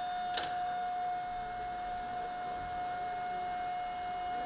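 Foundry melting furnace running with a steady high-pitched whine, and a single sharp clink of metal about half a second in.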